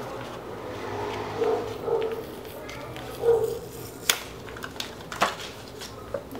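A printed cardboard sleeve being slid off a clear plastic watercolour palette, with soft rubbing and handling noise. There are two sharp plastic clicks about four and five seconds in.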